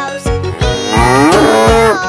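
A cartoon cow's long moo, starting about half a second in and lasting well over a second, over a children's song backing with a steady beat.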